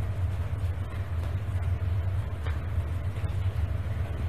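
A steady low hum fills the background, with a few faint soft ticks as tarot cards are handled.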